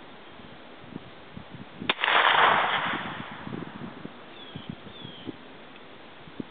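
A single 9mm gunshot about two seconds in: a sharp crack followed by a loud report that dies away over about a second.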